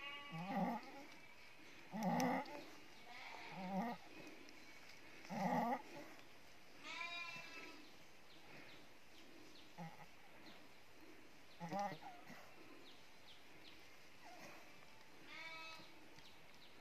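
A ewe in labour groaning and bleating in short, low calls, four in the first six seconds, as she strains to push out a lamb whose head and forefeet are already out. A higher, longer call follows about seven seconds in.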